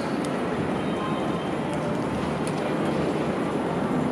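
Ice-arena crowd applauding and cheering, a steady wash of noise with no break.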